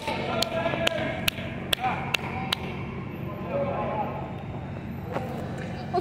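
Rhythmic hand clapping, about two claps a second, that stops about two and a half seconds in, with faint voices behind it.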